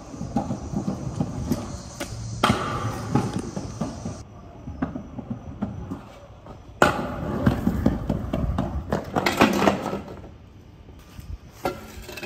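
Stunt scooter wheels rolling and clattering over concrete, with a sudden loud landing impact a little before seven seconds in, followed by more rolling.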